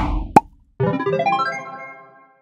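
Logo sting: a whoosh trails off, a single sharp pop, then a quick run of rising keyboard-like notes that rings away.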